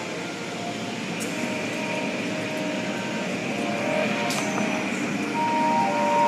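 Automatic car wash heard from inside the car: cloth strips and rotating brushes scrubbing over the body and windows under water spray, a steady wash of noise with a couple of short sharp knocks.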